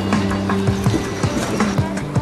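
Soundtrack music with held low notes under a quick pattern of clicking percussion.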